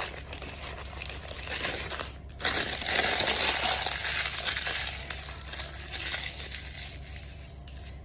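Crisp dried nori seaweed sheets crushed and crumbled by hand, a dense crackling that grows louder about two and a half seconds in and tapers off near the end.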